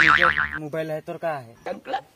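A cartoon-style comedy sound effect: a boing-like whistle that wobbles up and down in pitch several times and stops about half a second in. A man talks through the rest.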